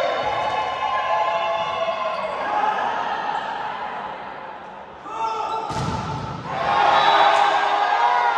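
Volleyball rally in a large sports hall: players calling and shouting, a single sharp smack of the ball a little before six seconds in, then louder shouting as the point ends.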